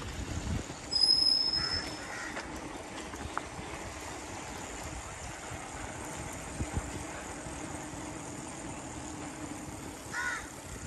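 Bicycle tyres rolling over an interlocking paver-block lane: a steady rumble with a few small bumps. A short high-pitched squeal about a second in is the loudest moment.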